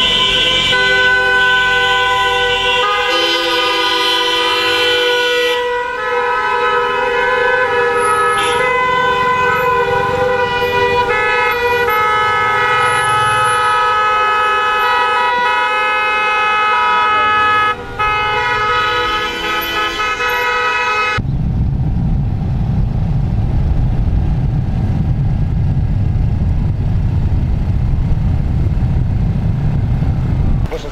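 Many taxi horns honking together, long held notes at several pitches overlapping without a break. About two-thirds of the way through they cut off abruptly and give way to a low, steady rumble.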